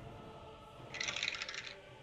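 Dice clattering briefly, a single roll lasting under a second about halfway through, over faint background music.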